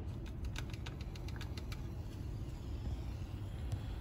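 Sodium bicarbonate and vinegar reacting in a glass test tube: a faint crackle of many small ticks from the fizzing, thickest in the first couple of seconds and then thinning, over a steady low hum.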